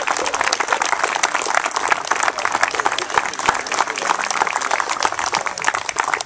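Crowd applauding: many hands clapping steadily.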